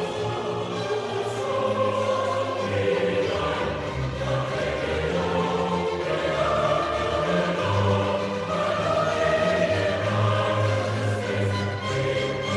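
A choir singing in several parts, holding long sustained chords that shift every second or two.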